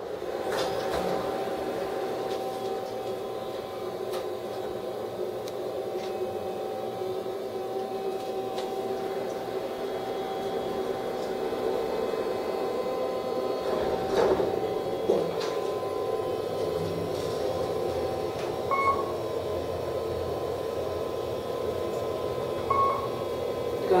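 Kone elevator car running, heard from inside the cab: a steady hum with a faint held whine. The car door slides with a knock about halfway through, and two short beeps come in the last few seconds.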